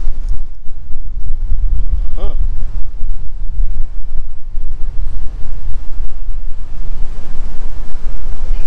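Wind buffeting the microphone: a loud, uneven low rumble, with a brief voice about two seconds in.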